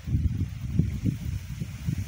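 Wind buffeting the microphone in uneven gusts, a low rumble that swells and dips.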